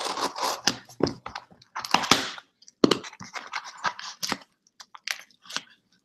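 A small cardboard box and its packing being opened by hand: irregular crinkling, tearing and scraping, with a longer rustle about two seconds in and a sharp snap shortly after.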